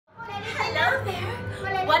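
Speech only: a woman's voice speaking a greeting.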